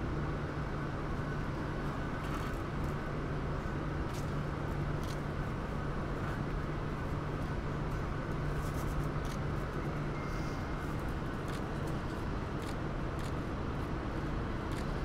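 Steady street background noise with a constant low hum, like traffic or an idling engine, and a few faint small clicks; no music or speech.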